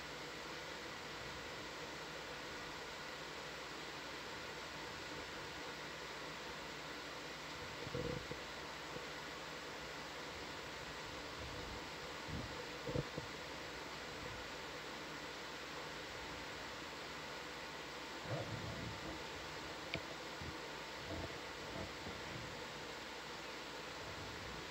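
Steady faint hiss of the audio feed, with a few short faint thumps scattered through it, the sharpest about thirteen seconds in.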